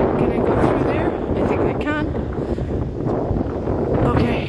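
Strong wind buffeting the phone's microphone, a loud, even rush strongest in the low end. A brief voice sound cuts through about two seconds in.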